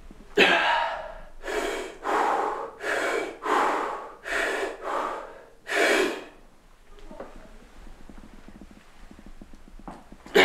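A man breathing hard and forcefully while grinding through a heavy set of barbell back squats. There are about eight sharp, loud breaths and gasps in the first six seconds, most of them in quick pairs, and then the breathing goes quiet.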